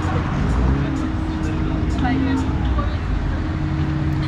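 Fairground ride machinery humming steadily over a low rumble while the ride stands at its platform, with people's voices chattering over it.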